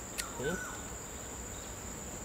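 Insects chirring steadily in one high, even tone, with a single sharp click a moment after the start.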